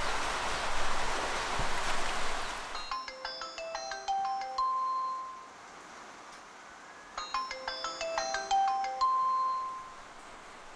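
A steady hiss that stops abruptly about three seconds in, then a smartphone ringing with a short chiming melody, played twice, as a call to the girl's parents goes through.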